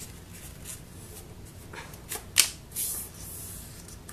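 A sheet of paper being folded and creased by hand, with soft rustling and a few short crackles, the sharpest about two and a half seconds in.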